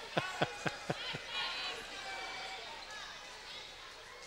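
Basketball being dribbled on a gym floor, about four bounces a second, stopping about a second in.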